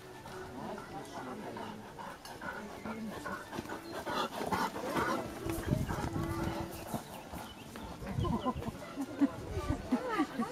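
Indistinct chatter of several distant voices, growing louder about four seconds in, with one low held call lasting about a second near the middle.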